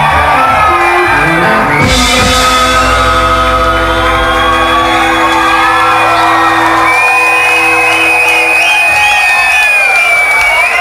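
Live blues-rock band ending a song: a cymbal crash about two seconds in, then electric guitars and bass hold a final chord that rings out, the bass dropping away near the end. A high steady tone and whoops and shouts from the audience come in over the fading chord.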